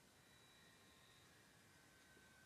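Near silence, with only a faint steady hiss.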